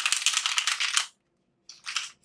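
A deck of tarot cards being shuffled by hand: a rapid flutter of cards for about a second, then a pause and a couple of short swishes near the end.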